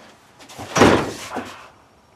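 A door moving: one scraping rush about a second long, loudest a little under a second in, with a smaller knock just after.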